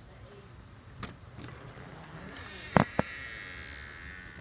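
A door being opened: two sharp latch-and-frame clicks about a quarter second apart, near three quarters of the way through, with a rushing hiss of outside air that starts just before them and runs on.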